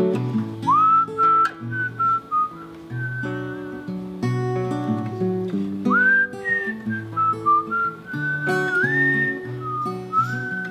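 A man whistles a melody over his own strummed acoustic guitar. The whistled line scoops up into a few long held notes, about a second in, near the middle and near the end, while the guitar chords go on underneath.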